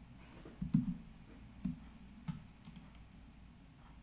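A few faint, scattered clicks from a computer keyboard and mouse, the loudest just under a second in, then three or four lighter ones spaced about half a second apart.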